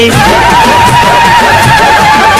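Telugu devotional song: one long note held with a wavering vibrato over the instrumental backing and drums.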